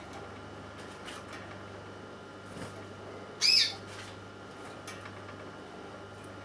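A bird's short call, heard once about three and a half seconds in, over a faint steady hum.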